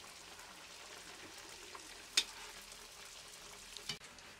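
Donuts sizzling steadily as they deep-fry in hot oil in an iron wok. There is one sharp pop a little past halfway, and a smaller one near the end.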